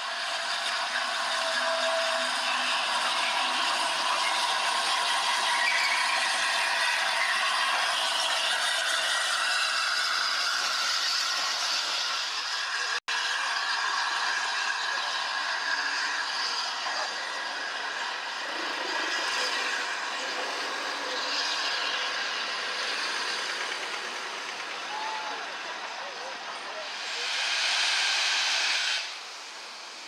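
Steam locomotives working trains past, a steady hissing running noise with a brief break about a third of the way in. Near the end comes a loud burst of steam hiss lasting about two seconds, as a locomotive blows off a cloud of steam.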